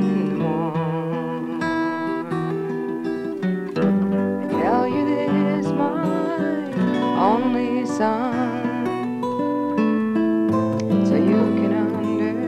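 Acoustic guitar playing an instrumental passage of a folk song, with a wavering melody line above it that slides up into some of its notes.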